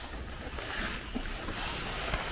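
Wind rumbling on the microphone, with a rustling hiss that swells about half a second in as the camera moves through long grass against a perforated metal panel.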